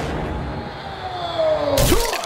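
Logo-intro sound effects: a low rumble under a slowly falling tone, ending in a sharp hit near the end.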